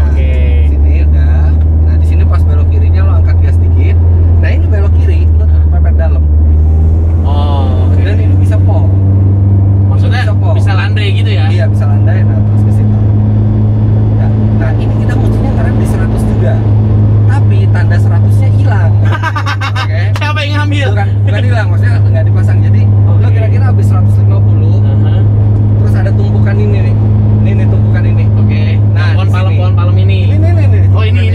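Honda Brio's four-cylinder engine droning inside the cabin as the car is driven around the circuit, its pitch stepping up about seven seconds in and its level dipping briefly about two-thirds of the way through.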